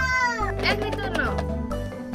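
Light children's background music playing, with two short, very high-pitched calls over it in the first second and a half, each falling in pitch.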